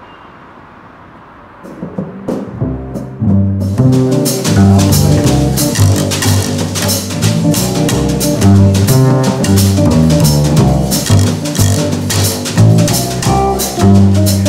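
A small jazz combo playing. Faint background hiss gives way to double bass notes about two seconds in, and drums and cymbals join the bass a second or two later.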